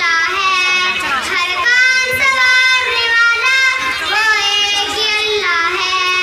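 A girl singing solo into a microphone, holding long notes that bend and waver in pitch.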